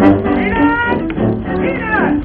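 Cartoon orchestral score playing, with a cat-like meowing cry over it whose pitch slides down near the end.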